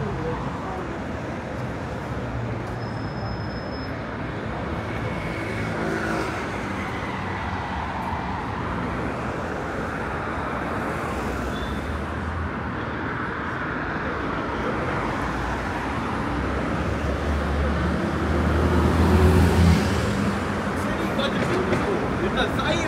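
Steady road traffic on a busy multi-lane city street, cars passing continuously. Near the end a heavier vehicle goes by closer, its low engine rumble the loudest sound.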